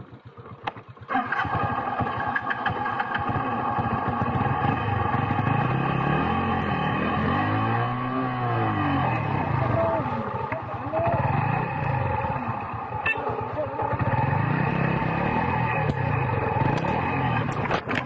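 Motorcycle engine running close by, its pitch rising and falling as the throttle is worked. It comes in suddenly about a second in and stays loud.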